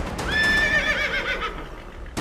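A horse whinnying once, about a second long: a high held call that breaks into a quavering, falling whinny.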